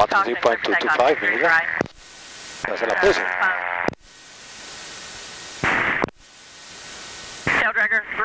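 Aircraft radio hiss and static between ATC transmissions, heard through the cockpit intercom audio. The hiss swells, carries a faint garbled voice around three seconds in, cuts off abruptly near four and six seconds as the squelch closes, with a short louder crackle just before the second cut-off. Voices come in at the start and near the end.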